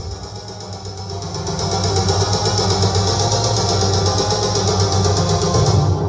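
Music played loud through a tall stacked loudspeaker sound system: a build-up with a fast, even repeating pulse over a steady deep bass, gradually getting louder.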